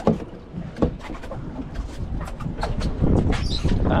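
Boat-deck noise on open water: a low rumble of wind and water with scattered sharp knocks and clicks. It grows louder about three seconds in, as a fish is reeled to the surface.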